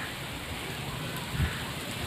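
Wind buffeting a phone microphone outdoors: a steady hiss with an unsteady low rumble and one low thump about a second and a half in.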